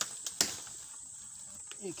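A few sharp knocks and clicks as a weathered wooden board lying on the ground is handled and lifted; the loudest is about half a second in. Under them runs a steady high-pitched insect drone.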